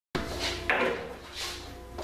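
A couple of dull knocks or clunks, the loudest a little under a second in, over faint background music.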